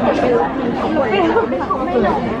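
Several people talking at once in overlapping conversation.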